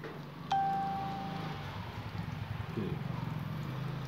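A single chime-like ring about half a second in: a sharp strike, then one clear tone fading away over about a second, over a steady low background rumble.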